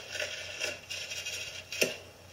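Old home-video footage playing faintly through a laptop speaker: hiss with rustling and handling noise, and one short sharp sound near the end.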